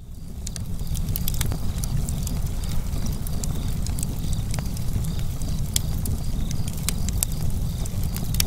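Wood fire burning: a steady low rumble with scattered sharp crackles and pops, fading in at the start.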